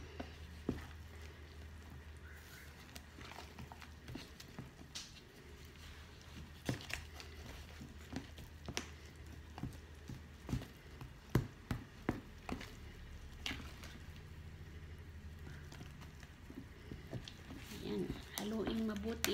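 A plastic spatula stirs and folds thick batter in a plastic mixing bowl, giving soft irregular clicks and knocks of the spatula against the bowl. A low steady hum runs underneath.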